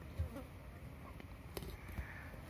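Flies buzzing around a freshly opened wild boar carcass while a Komodo dragon feeds on it, with a dull thump just after the start and a few short clicks past the middle from the tearing and biting.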